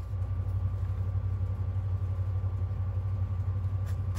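A steady low hum, unchanging throughout, with a faint click or two near the end.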